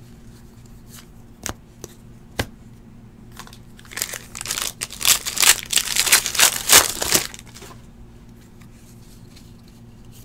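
Foil wrapper of a Score football trading-card pack being torn open and crinkled by hand, a crackling burst of about three seconds starting a little before the middle.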